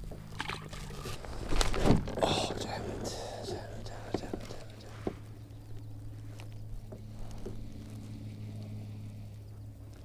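A splash about two seconds in as a small largemouth bass is let go over the side of a kayak into the water, followed by a steady low hum.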